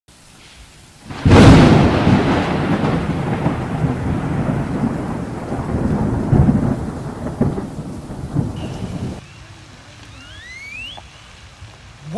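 A loud thunderclap cracks about a second in and rolls away in a long rumble that fades out over the next several seconds. A few faint rising chirps follow near the end.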